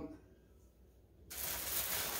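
Near silence, then about halfway in a plastic bag of packaging begins to rustle and crinkle as it is picked up and handled.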